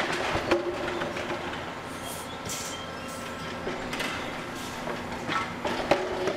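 Wooden, steel-hooped whiskey barrels rumbling and clattering as they are handled on a barrel track, with several sharp hollow knocks: at the start, about half a second in, around four seconds and just before the end.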